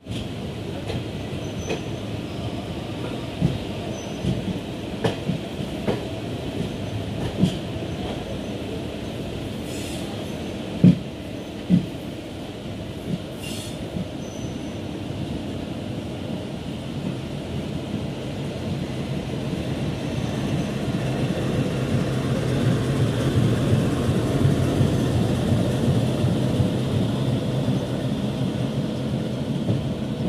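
Container freight wagons rolling past on steel rails, with scattered wheel clicks and two sharp knocks about 11 and 12 seconds in. From about 20 seconds a deeper rumble builds and grows louder as a WDG4G diesel locomotive hauling containers approaches.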